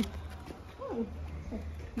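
A husky gives a short whine that falls in pitch about a second in, followed by a briefer second whimper.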